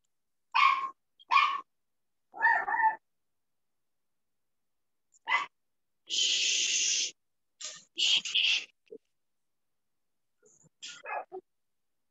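A dog barking, a few short barks in the first three seconds, heard through a video call's audio; about six seconds in comes a hiss lasting about a second.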